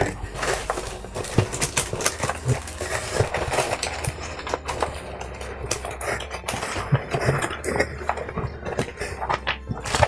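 A cardboard box being rummaged through by hand: irregular rustling, crinkling and clicking of cardboard and packing paper, over quiet background music.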